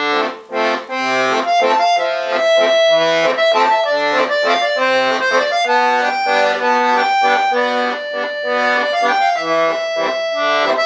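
Weltmeister Juwel piano accordion being played: a melody on the treble keys over a regular left-hand accompaniment of bass notes and chords from the bass buttons.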